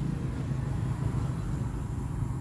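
A pause in acoustic guitar playing: the low notes of the last strummed chord fade out, leaving a low, steady background rumble.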